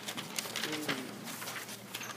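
Handling noise from the recording device being moved over a desk, with scattered clicks and rustles, and a short murmured voice-like hum about three quarters of a second in.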